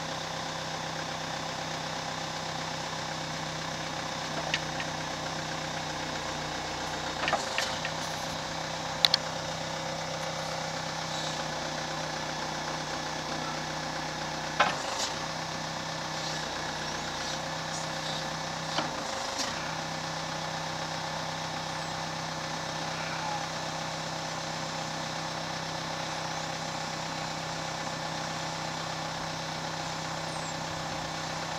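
Case 580C loader backhoe's engine running steadily while the backhoe boom and bucket are worked, with a few sharp clanks from the linkage. The engine note dips briefly three times as the hydraulics take load.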